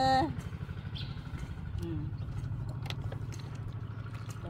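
An engine running steadily at idle, a low even throb that carries on throughout. A woman's voice trails off just at the start.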